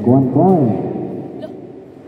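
A man's voice shouting two short, loud calls in the first second, over the echoing background noise of an indoor basketball court.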